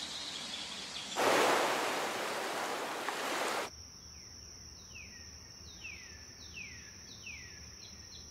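Intro sound effects: a steady hiss swells about a second in into a loud rushing noise like surf, which cuts off suddenly after about three and a half seconds. A thin high steady tone follows, with a run of short falling chirps, about one every two thirds of a second.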